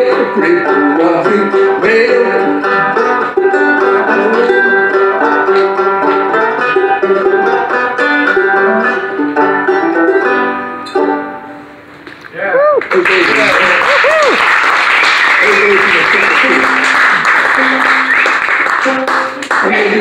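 Open-back banjo played clawhammer style runs through a tune's last bars and stops about eleven seconds in. After a brief pause, applause with some cheering follows for about seven seconds.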